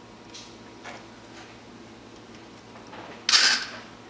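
Torch-heated threaded plug being worked off a Beretta 391 shotgun's magazine tube by hand. There are a few faint clicks, then a sudden loud burst a little over three seconds in as the plug lets go under the tube's spring tension.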